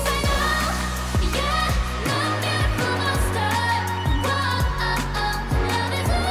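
K-pop song with female group vocals over a pop backing track, driven by a steady kick drum at about two beats a second.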